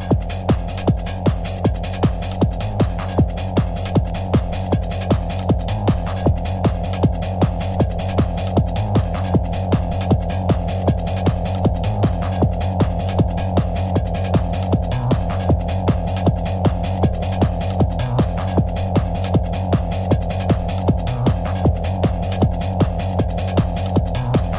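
Early-1990s hard trance music: a steady pounding kick drum, a little over two beats a second, under a low droning bass and held synth tones.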